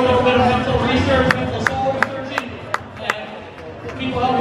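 Crowd chatter and voices in an event hall, with a run of about seven sharp hand claps close to the microphone, roughly three a second, starting about a second in and stopping near the three-second mark.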